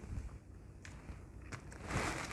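Faint rustling of brown paper pattern pieces being handled and smoothed by hand, a little louder near the end.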